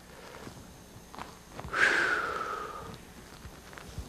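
A man's audible breath out, a breathy rush of about a second that starts about two seconds in and fades away.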